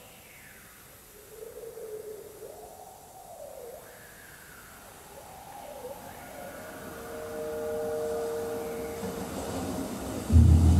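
Invented mouth-blown tube instrument, sounded through live electronics, making wavering pitched tones that swoop up and down in repeated arcs. From about six and a half seconds two steady tones are held together for about three seconds.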